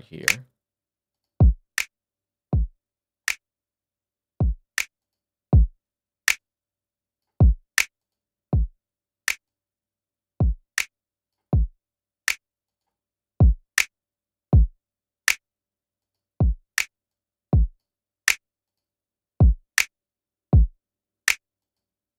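A programmed drum pattern plays through the Distressor compressor plugin, set to ratio 10 with its third-harmonic distortion on. It is a sparse pattern of kick and snare hits with silence between them. The kicks drop in pitch, and a slight distortion and click ride on their clamped-down transients.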